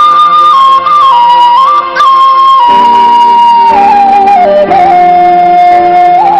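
A flute playing a slow, ornamented melody that steps gradually downward, over a band's sustained backing chords.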